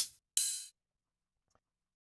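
Drum-kit samples played from a software drum machine's pads: the tail of one hit at the start, then a single short, hissy, cymbal-like hit about a third of a second in.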